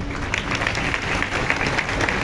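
A large audience applauding, the clapping starting about a third of a second in.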